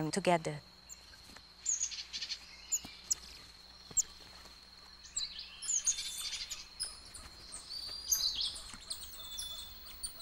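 High-pitched chirps and short whistled calls from small forest animals, a few scattered ones early on and a busier run of chirps and trills in the second half, over a faint steady high tone.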